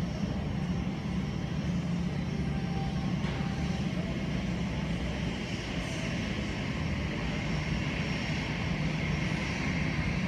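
Airport apron ambience dominated by jet engines of taxiing airliners: a steady drone with a low hum, and a higher engine whine that grows stronger near the end.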